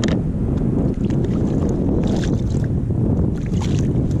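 Steady wind rumble on the microphone out on open water, with light clicks and knocks from hands handling plastic kayak gear: one at the start, a cluster about two seconds in and another near the end.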